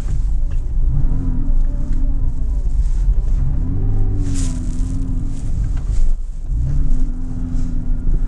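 Porsche Cayman S 987's flat-six engine revving up and down in slow waves as the car slides its rear wheels around in snow, over a steady low rumble, with a brief rush of noise about halfway through.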